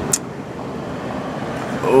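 Steady background rumble of road traffic outdoors, with a brief sharp tick right at the start.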